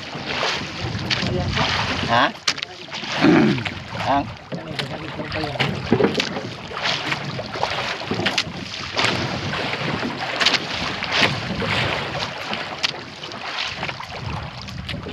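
Wind buffeting the microphone in irregular gusts, with sea water splashing around the hull of a small outrigger boat.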